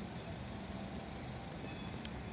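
Street traffic ambience: a steady low rumble of distant vehicles on a wide city road, with a brief faint click about one and a half seconds in.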